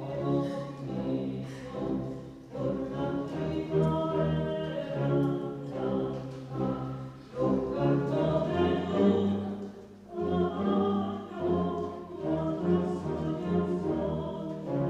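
Wind band of saxophones, clarinets, flute, trumpets, trombones and tuba, with a double bass, playing a slow piece in phrases of a second or two with short breaths between them.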